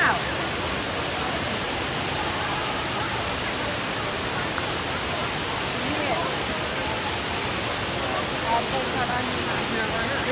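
Waterfall pouring, a steady rushing noise.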